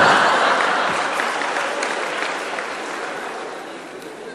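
Audience applause in a hall, loudest at the start and dying away gradually.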